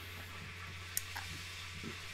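Faint steady hiss and low hum of room background noise, with a brief click about a second in.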